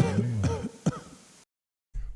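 Rock intro music dies away, then a short man's throat-clearing sound and a single click, followed by dead silence.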